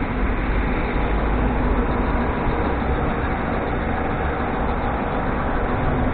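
Steady city street background noise: an even, low rumble with no distinct events, typical of distant traffic.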